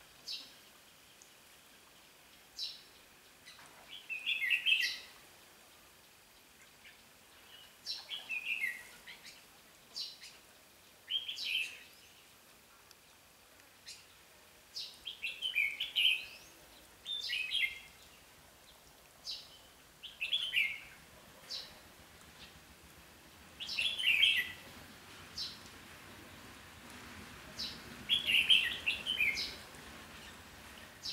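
Red-whiskered bulbul singing short, bright song phrases, one every two to four seconds.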